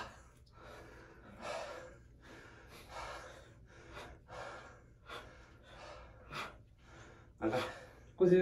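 A man breathing hard through a set of push-ups: short, breathy exhalations come roughly once a second, in time with the reps, and the loudest comes near the end.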